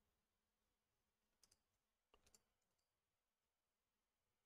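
Near silence, with two very faint clicks about one and a half and two seconds in.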